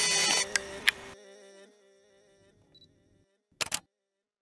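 Animated logo sting: a bright shimmering synth chord with two sharp clicks, dying away within about a second and a half, then near silence until a short double click near the end.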